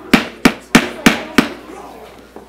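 Wooden gavel rapped five times in even succession, about three strikes a second, calling the meeting to order.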